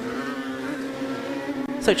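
Engines of F1000 single-seater racing cars, powered by 1000cc motorcycle engines, running past on the formation lap: a steady engine note with a brief wavering rise in pitch early on.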